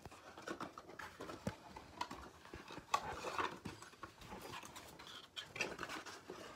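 Faint handling noise: scattered light clicks and rustles, a few slightly sharper knocks among them, as the phone camera is moved around.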